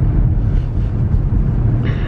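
Steady low rumble of a moving car heard from inside the cabin: engine and tyre road noise with no other event standing out.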